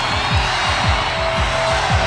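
Hard rock song intro: a fast kick-drum pattern under a dense wash of distorted electric guitar.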